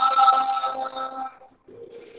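A man's singing voice holding one long note, which fades out about one and a half seconds in.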